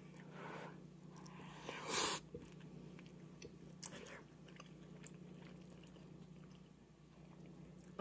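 Quiet close-up chewing of a mouthful of cheesy ramen noodles, with small wet mouth clicks and one short hissing sound about two seconds in. A faint steady low hum sits underneath.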